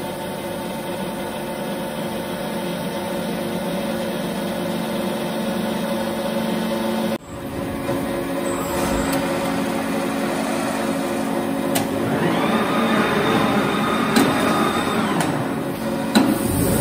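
Prima Power PSBB punching, shearing and bending machine running: a steady machine hum with several held tones, which breaks off abruptly about seven seconds in and resumes. From about twelve to fifteen seconds a drive whine rises and holds, with a few sharp clicks.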